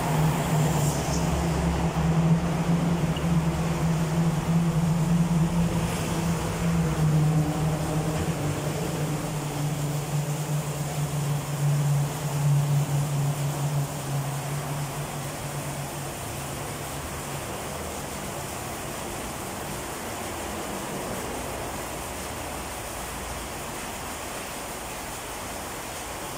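Water from a hose pouring through a floor drain grating into a sump pit as it is filled: a steady rushing splash with a low hum underneath, both growing quieter about halfway through.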